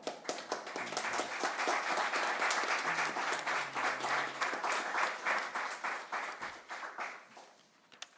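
Audience applause: dense, steady hand clapping that starts suddenly and tails off near the end, marking the close of a talk.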